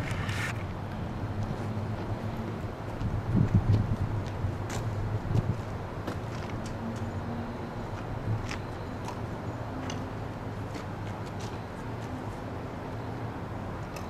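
Outdoor street ambience: a steady low rumble with footsteps and scattered light clicks as a parked motorcycle is handled, its engine not running.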